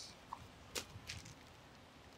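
Mostly quiet outdoor background with a few faint, brief knocks and rustles as the unwrapped handlebars and their plastic packaging are handled. The sharpest, a single short knock, comes just under a second in.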